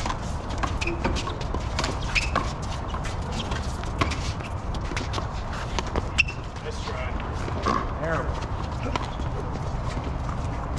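Outdoor small-ball handball rally: the hard rubber ball slapping off concrete walls and the players' gloved hands in a run of sharp, irregular smacks, with scuffing footsteps on the court, over a steady low background noise.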